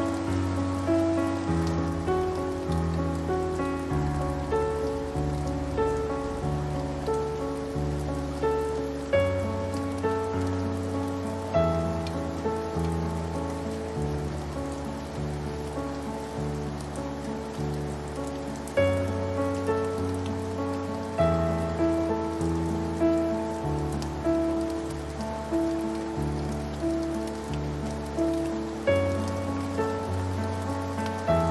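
Slow, gentle solo piano, bass notes changing about once a second under a soft higher melody, mixed over a steady sound of rain falling on a surface.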